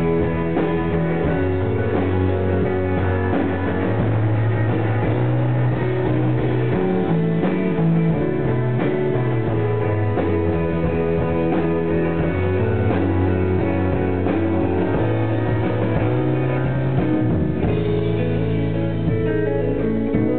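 Live rock band playing an instrumental passage on electric guitars and drum kit, with sustained guitar notes over a moving bass line and steady drumming.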